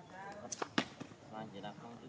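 Baby macaque crying in short, high, wavering calls at the start and again past the middle, with two sharp clicks just after half a second and just under a second in.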